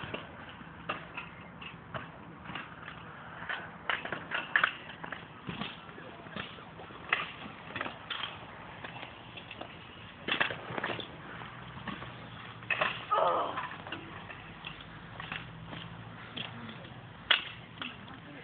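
Kick scooters on concrete skatepark ramps: irregular sharp clacks and knocks of wheels and decks hitting the concrete. A voice calls out about thirteen seconds in.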